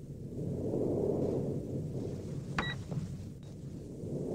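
Low, rumbling sci-fi ambient drone that swells and fades in slow waves, with a short electronic computer-interface beep about two-thirds of the way in.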